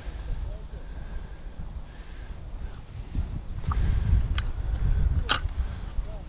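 Wind rumbling on the microphone over the rustle of fishing tackle being handled, with two sharp clicks of small tackle parts near the end.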